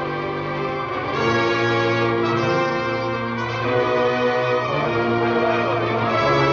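Orchestral film score, brass to the fore, playing held chords that change every second or so and swell slightly about a second in.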